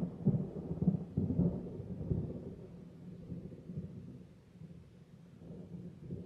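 A long, low rumble of thunder, heard from inside a car. It is loudest at the start and dies away over about four seconds.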